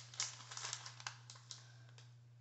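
Clear plastic bag crinkling as it is handled, a run of short sharp crackles in the first second and a half. A low steady hum lies underneath.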